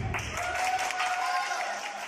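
Audience applauding, with a few voices among the clapping.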